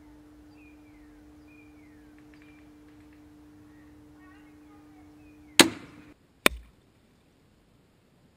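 A Barnett Predator crossbow fires with one sharp crack. Just under a second later an arrow strikes the target with a short, sharp hit and a dull thud. A steady low hum and faint chirps sit under the crossbow's crack.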